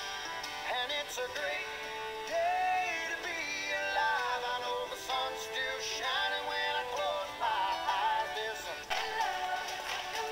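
A recorded pop song playing, with a lead vocal over the backing track.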